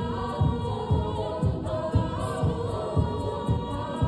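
All-female a cappella group singing in close harmony, with a steady low beat about twice a second under the sustained chords.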